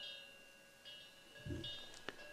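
Faint high chime-like ringing: a few light metallic tones that sound and fade, with a short low sound about one and a half seconds in.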